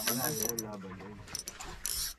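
Conventional slow-pitch jigging reel being cranked by hand, its gears and ratchet giving a mechanical whirr with a few sharp ticks. A thin high whine fades out about half a second in.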